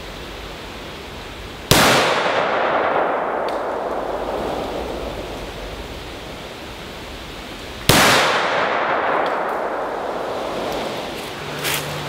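Two gunshots from a 10.3-inch-barrel AR-15 short-barrelled rifle, about six seconds apart. Each is a sharp crack followed by a long echo dying away through the woods.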